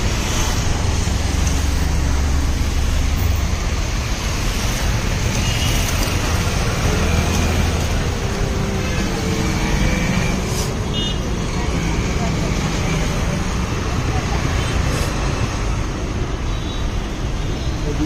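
Steady street noise of road traffic, a continuous low rumble that swells and eases as vehicles pass, with faint background voices.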